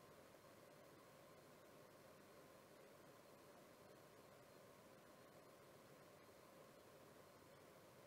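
Near silence: faint steady room tone with a light hiss.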